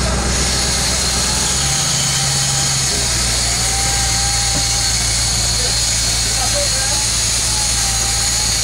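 Sport-fishing boat's engines running with a steady drone while the boat is under way; the low tone shifts briefly about two seconds in.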